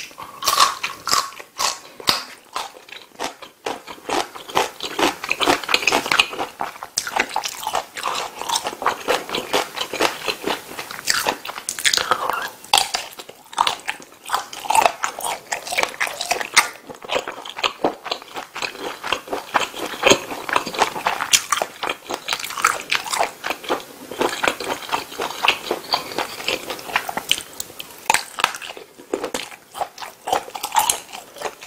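Close-miked eating sounds: a person chewing and biting into pasta and a kielbasa sausage. The mouth clicks and bites come in a dense, irregular run.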